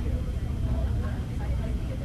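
Wind buffeting the microphone, a steady low rumble, with a faint voice underneath.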